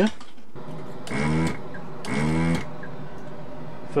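Small bench fume extractor fan switched on about half a second in and running steadily. Two short louder sounds of about half a second each come about a second apart.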